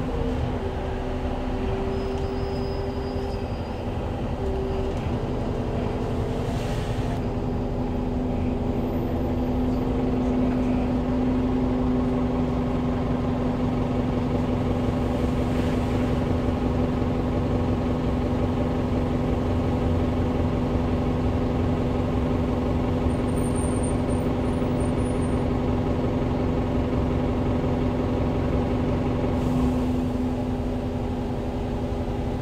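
SOR NB12 city bus with an Iveco Tector diesel engine and ZF 6AP1200B automatic gearbox, heard from inside the passenger cabin while driving. The steady engine and driveline hum shifts pitch a few times in the first few seconds, then holds steady.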